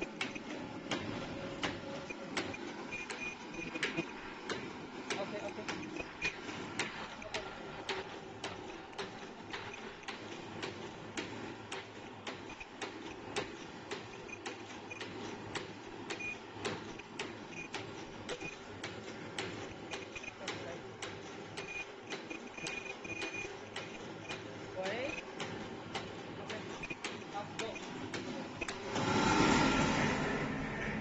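Flat face-mask making machine running at slow speed: a steady mechanical hum with an even, sharp click about twice a second from its working cycle.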